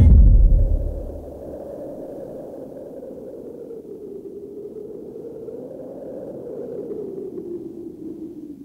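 Dramatic TV-serial background score: a deep boom hit that fades within about a second, followed by a low, wavering drone.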